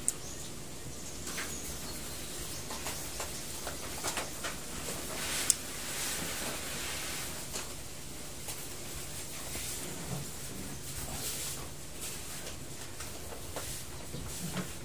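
Mouth sounds of someone eating duhat (Java plum) fruits: wet chewing, sucking and lip smacks, with many small scattered clicks and a sharper click about five and a half seconds in.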